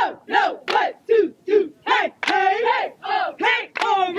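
A women's cheer squad chanting a sing-song cheer in unison, short shouted syllables about two or three a second.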